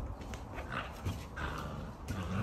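Puppies' claws and paws pattering and scuffling on wooden deck boards, a scatter of faint light clicks.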